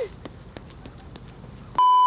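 Quiet room tone with faint light ticks, then near the end a loud, steady electronic test-tone beep cuts in abruptly. It is the kind of tone played over TV colour bars, used here as an edit transition.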